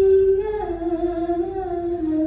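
A woman's solo voice chanting unaccompanied, holding one long note that slides slowly lower in pitch.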